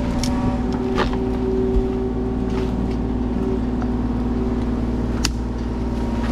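Kubota mini excavator's diesel engine running steadily under hydraulic load as its bucket comes down onto logs in a dump trailer. A few sharp knocks of the bucket on wood cut through, the loudest about five seconds in.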